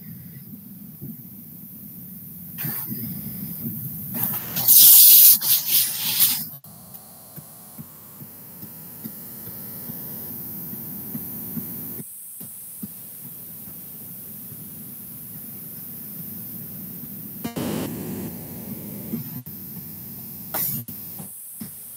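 Open-microphone room noise: a steady low hum, broken by a few short loud noises, the loudest lasting about two seconds around five seconds in.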